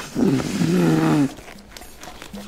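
Air blown hard through the lips into a blue exam glove to inflate it: a breathy, buzzing sound about a second long, its pitch falling and then holding before it stops.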